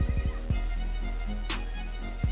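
Background music with a steady drum beat under sustained held notes, with a quick run of drum hits at the start and a sharper hit about one and a half seconds in.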